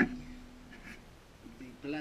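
A man's voice: a held, drawn-out hesitation sound that fades within the first second, then speech starting again near the end.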